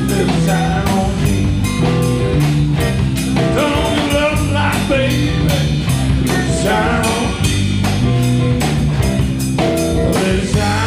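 A blues band playing live, a slow soul-blues number with drums, bass and electric guitar; the guitar lines bend in pitch between the sung lines.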